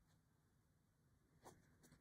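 Near silence with faint scratchy rustles of cotton fabric and thread as a needle is worked through it by hand; the clearest scrape comes about one and a half seconds in, with another shortly before the end.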